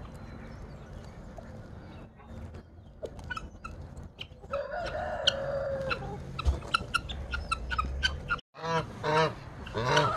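Chickens clucking with scattered short calls. About halfway through, a rooster crows once for about a second and a half. Near the end, geese start honking in a quick run of calls.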